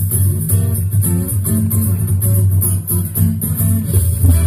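Live band playing amplified dance music with a strong bass and a steady beat.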